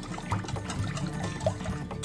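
Wire whisk mixing a thin tomato-and-vinegar sauce in a stainless steel bowl: wet sloshing with many light clicks of the wires against the bowl.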